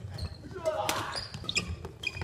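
Badminton doubles rally on a wooden gym floor: sharp cracks of rackets striking the shuttlecock, with players' shoes squeaking and thudding on the court, reverberating in a large hall.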